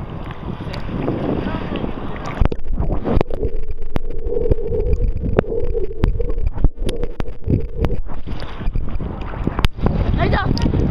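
Sea water sloshing around a camera held at the surface, going muffled and rumbling whenever it dips under, with many sharp clicks throughout.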